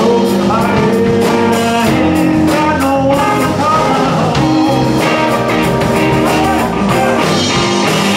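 Live blues-rock band playing: two electric guitars over a drum kit, loud and steady.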